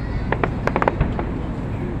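Aerial fireworks bursting in the sky: a quick cluster of about eight sharp pops and cracks within the first second or so.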